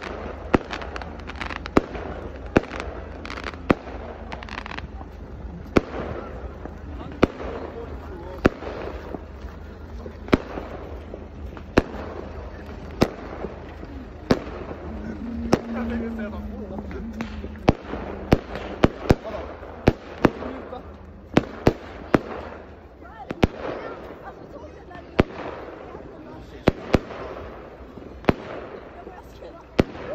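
Aerial fireworks going off overhead: a long run of sharp bangs at irregular intervals, one or two a second, with a quick cluster of bangs a little past the middle.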